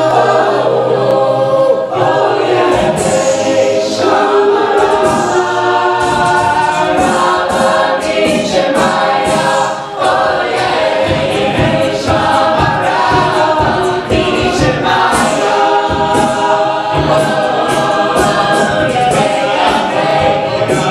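Mixed male and female a cappella group singing in harmony into microphones, with a low sung bass line. A percussive beat joins about three seconds in.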